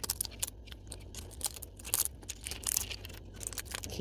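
Pine cone scales being snapped and torn off with needle-nose pliers: an irregular string of sharp cracks and crunches.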